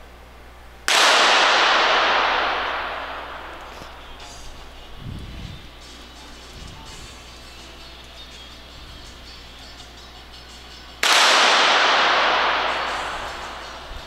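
.22 sport pistols fired on an indoor range: two sharp shots about ten seconds apart, one about a second in and one near the end. Each is the two finalists firing together at the same signal, and each rings out in a long hall echo.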